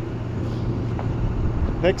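Sany SY265C excavator's diesel engine idling with a steady low hum.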